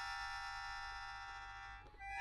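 Chromatic button accordion holding one high sustained chord that slowly fades, breaking off near the end as the next chord begins.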